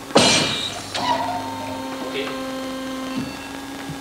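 Leg-strength test rig in a sports lab worked by a rider pushing with both legs. It gives a short loud rush of noise as the push starts, then a steady electric machine hum for about two seconds that cuts off near the end.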